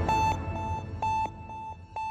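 Electronic beeps from a TV news intro theme: one high tone pulsing about four times a second, with a longer beep about every second, as the theme music fades out.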